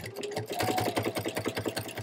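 Computerized home sewing machine running at speed, straight-stitch quilting through the quilt layers: a steady motor whine under a fast, even patter of needle strokes.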